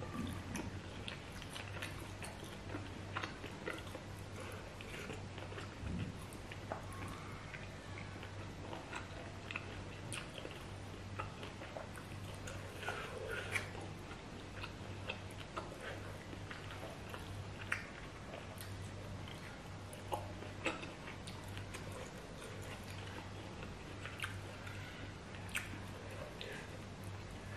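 Close-up chewing and mouth sounds of a person eating roast pork (BPK) in a blood-and-chili sauce by hand, with many small irregular clicks throughout.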